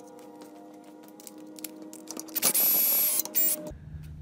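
Cordless drill driver with a socket running in a loud whirring burst of just under a second, about two and a half seconds in, then briefly again, loosening the screws that hold a recliner mechanism to the base. A steady hum of several tones runs beneath.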